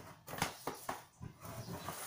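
Shoes being handled and moved about on a floor: several light knocks and scuffs with some rustling in between.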